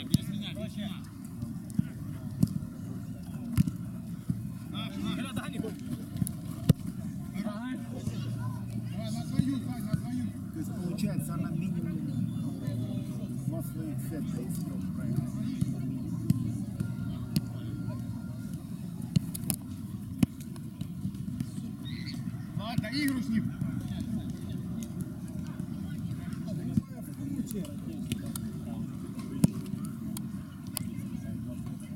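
Sound of an amateur mini-football match on artificial turf: sharp thuds of the ball being kicked every few seconds and players calling out now and then, over a steady low rumble.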